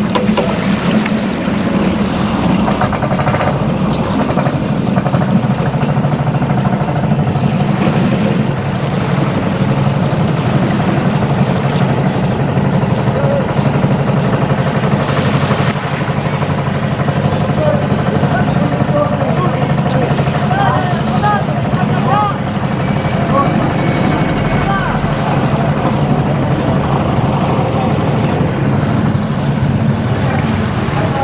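A boat engine running steadily at a constant pitch.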